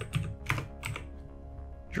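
A few keystrokes on a computer keyboard, typing a short search term, mostly in the first second. Steady background music plays underneath.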